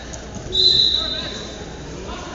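Referee's whistle blown once about half a second in, a single steady high note lasting about a second, stopping the action.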